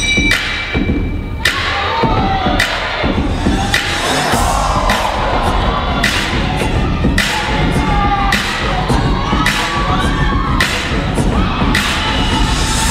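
Loud dance-routine music mix built on hard, heavy hits every half-second to second, with an audience cheering and whooping over it.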